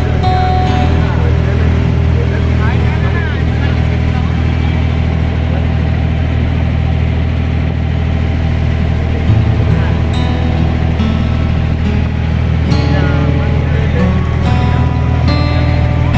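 A boat's engine running steadily with a constant low drone, with voices and music over it.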